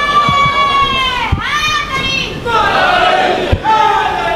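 A man's voice holding long, high, drawn-out sung notes of recited verse over a PA, each note sliding down in pitch as it ends, with the gathering's voices around it.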